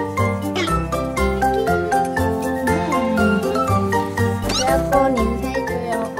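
A kitten meowing several times in short calls over bright background music with a steady melody.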